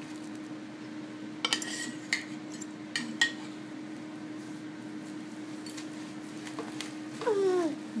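Metal forks clicking and scraping against a disposable aluminium foil pan as tender pulled pork is shredded, a few sharp clicks in the first half, over a steady low hum. Near the end a short pitched call slides downward.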